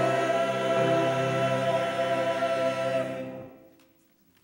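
Mixed church choir singing, closing on a long held chord that dies away about three and a half seconds in.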